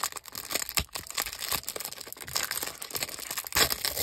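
Clear plastic wrapper crinkling and crackling irregularly as a stack of trading cards is worked out of it by hand, with the sharpest crackle near the end.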